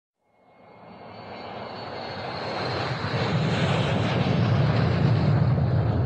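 Aircraft engine noise fading in from silence and growing steadily louder over about three seconds, then holding. A faint high whine rides on top at first.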